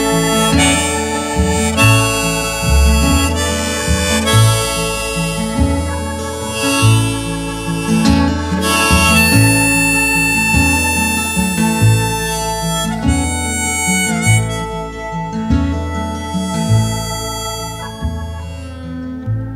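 Music: an instrumental break with a harmonica solo over acoustic guitar and a bass line that moves note by note, with no singing.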